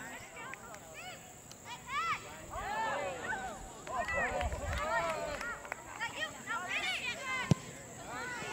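Several voices shouting and calling, indistinct and overlapping, from players and spectators across a soccer field. A single sharp knock comes about seven and a half seconds in.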